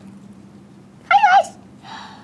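A short, high-pitched, squeaky wavering call about a second in, a cartoon-style Yoshi character cry, over a faint steady hum.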